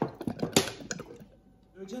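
A quick run of light clicks and taps in the first second or so, then a short near-quiet gap before a voice starts near the end.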